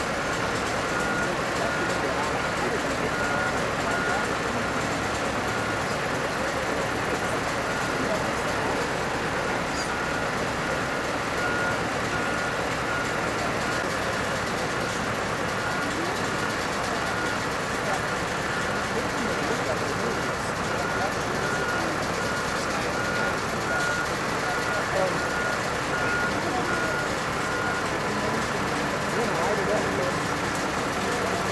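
Reversing alarm on heavy construction equipment beeping at a steady rate, all on one pitch, over a continuous din of heavy vehicle engines and voices. The beeping stops near the end.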